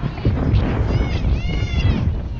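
Wind rumbling on the microphone. About a second in, a high-pitched, drawn-out call rises and falls in pitch.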